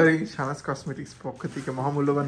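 A woman speaking, with the crinkle of clear plastic wrapping as a wrapped box is handled.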